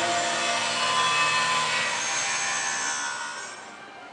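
Electronic soundtrack of a projection-mapping show through venue loudspeakers: a dense, hissing, shimmering wash with sustained tones in it, fading out over the last second as the projection goes dark.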